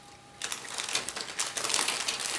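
Clear plastic bag holding plastic kit sprues crinkling and crackling as it is handled, a rapid run of crackles starting about half a second in.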